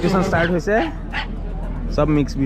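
Dogs yipping and barking in short sharp calls, several times, over the chatter of a crowd.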